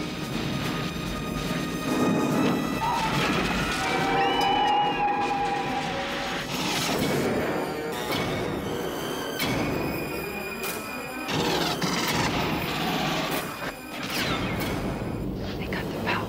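Movie trailer soundtrack: music mixed with explosion and gunfire effects, with a run of sharp crashing impacts in the second half.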